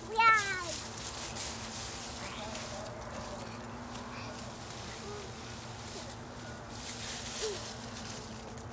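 A short, loud, high-pitched squeal of delight right at the start, then soft rustling of dry fallen leaves as small children play in a leaf pile, with a few faint brief child vocalisations and a faint steady hum underneath.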